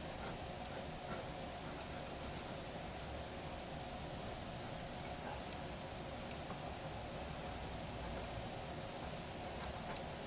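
Pencil drawing on paper: faint, quick, irregular scratching strokes, several a second in bursts with short pauses between, as lines are sketched in.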